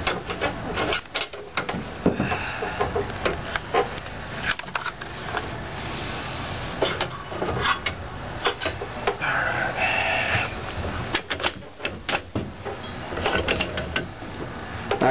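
Metal clanks, clicks and scraping as a motorcycle front shock is clamped into the vise of a wall-mounted strut spring compressor and the compressor is worked, with a steadier rasping stretch about two-thirds of the way through.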